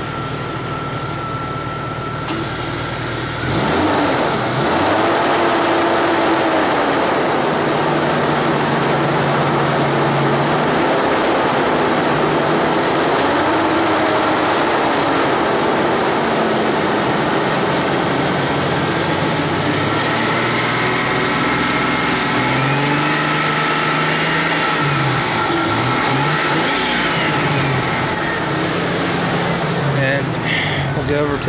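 A car engine idling, then revved up and down repeatedly from about three and a half seconds in, its pitch climbing and falling with each rev.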